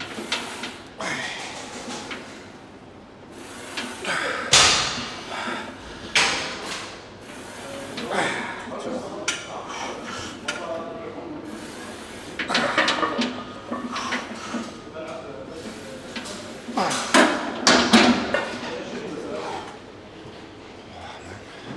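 A lifter's strained grunts and heavy breathing through the last reps of a Smith machine bench press, with several sharp metallic clanks from the bar and weight plates.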